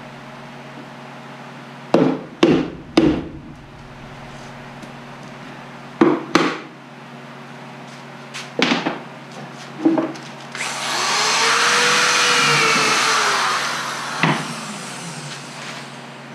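Sharp knocks on a wooden deep hive box: three quick ones, then a pair, then two single ones. About ten seconds in, a power drill runs for about three seconds with its pitch rising and then falling, and one more knock follows.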